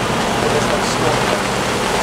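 Steady hiss of heavy squall rain falling on a sailing yacht, with a low steady hum beneath it.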